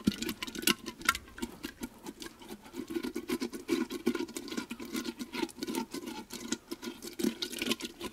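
A fist pushing around inside a hollowed-out honeydew melon, squishing the thick flesh left on its walls: a continuous wet squelching, full of quick small pops and crackles.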